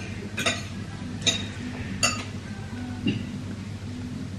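Soft background music playing in a restaurant dining room, with tableware clinking three times, sharply, in the first half.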